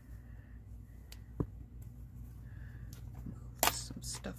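Scissors cutting through thick fabric: a few quiet snips and clicks, one sharp click about a second and a half in, then a louder clack near the end as the scissors are set down.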